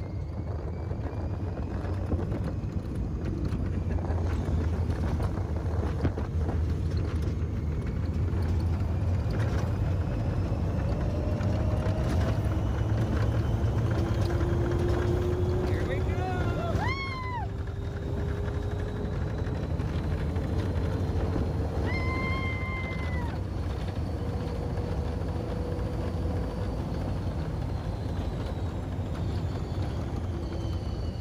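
Open-top Test Track ride vehicle running at high speed on the outdoor loop: a steady wind rush and low track rumble, with a thin motor whine that climbs slowly in pitch as the car speeds up. Riders give two short high shouts, about two-thirds and three-quarters of the way through.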